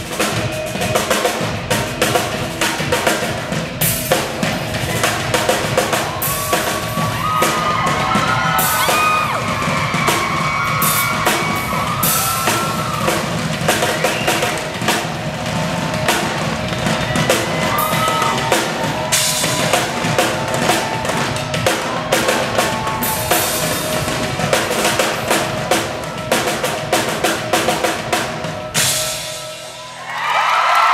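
Live drum break on a drum kit and an extra stage drum, struck hard and fast with sticks: many rapid hits and rolls on snare, bass drum and toms over the band. The drumming stops just before the end.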